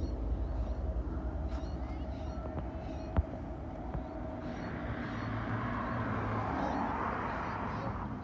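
Freight train cars rolling past on the rails with a steady low rumble. There is one sharp click a little over three seconds in, and a hiss of wheel and rail noise builds over the second half as the train's rear GE Evolution-series locomotive draws near.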